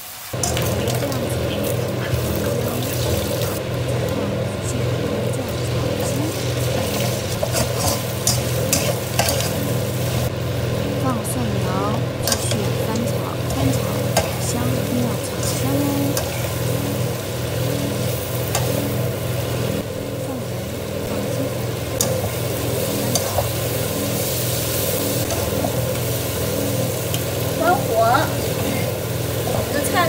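Slices of pork belly sizzling in hot oil in a wok, stirred and scraped continuously with a metal spatula, with frequent irregular clicks of the spatula against the pan, as the fat is rendered out of the meat. Later the pork is stir-fried together with sliced garlic sprouts. A steady low hum runs underneath.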